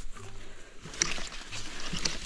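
Leaves and twigs of a dense bush rustling and crackling as a hand pushes through the foliage, in rough bursts about a second in and again near the end.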